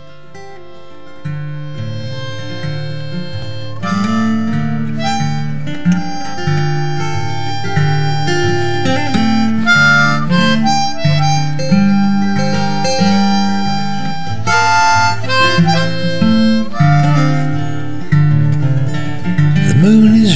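Instrumental intro of an acoustic song: acoustic guitar accompaniment with a harmonica carrying the melody, growing louder over the first few seconds.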